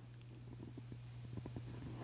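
Faint room tone between spoken sentences: a steady low hum, with a few faint, soft little sounds scattered through it.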